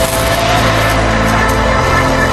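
Television title-sequence theme music with long held notes.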